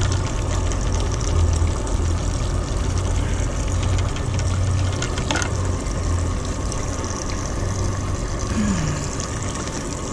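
A steady low mechanical hum with an even background hiss, with one faint click about five seconds in.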